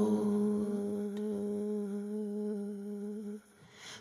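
Background song: a single sung note held steady for about three and a half seconds, then a brief drop-out just before the next line begins.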